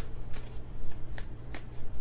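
A deck of tarot cards being shuffled by hand: a run of quick, uneven card snaps and clicks, several a second.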